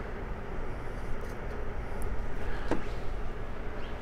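Steady low background hum with no speech, and one faint click about three-quarters of the way through.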